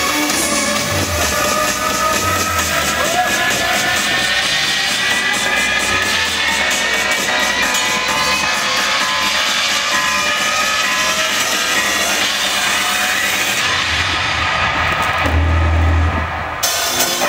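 Live rock band playing through a PA: amplified electric guitars holding long sustained notes over a drum kit. Near the end the highs briefly drop away and a heavy low hit lands.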